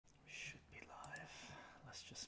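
A man speaking in a soft whisper, very quiet, with hissy s-sounds.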